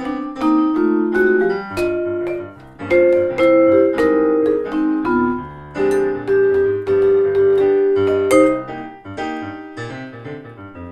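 Jazz duo of a Musser vibraphone played with yarn mallets and a Yamaha keyboard with an electric-piano sound, the vibraphone's struck notes ringing over the keyboard's chords. Near the end the vibraphone drops out and the keyboard plays on alone, more quietly.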